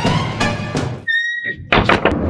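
Background music with a beat breaks off about halfway, a brief tone sounds, and then a wooden door slams shut near the end with a loud thunk.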